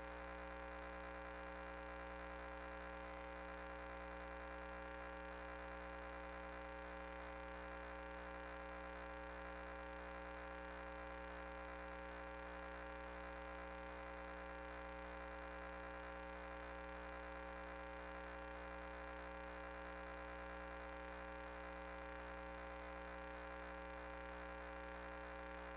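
Steady electrical hum made up of several constant tones, unchanging throughout.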